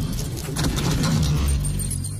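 Animated-intro sound effect: a rapid clatter of many small clicks over a deep low rumble as pieces fly together into the title logo. The clatter thins out and a thin high tone comes in near the end.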